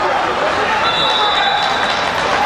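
Many voices chattering and echoing in a large indoor sports hall. Just under a second in, a referee's whistle sounds a steady high tone for about a second.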